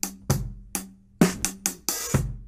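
Drum kit played with sticks: about eight snare drum strokes over the bass drum, the strokes coming closer together in the second half. It is a groove whose subdivision changes beat by beat: quarter notes, triplets, eighths, then sixteenths.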